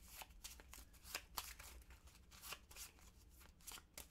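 Faint shuffling and flicking of a small deck of playing cards by hand, a quick irregular run of soft card clicks.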